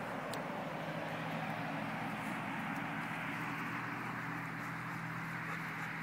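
Steady, continuous hiss of distant highway traffic, with a faint low steady hum beneath it.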